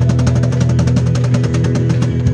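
Live band music: a cajon struck in a fast, even run of strokes, about ten a second, over a held bass and guitar chord.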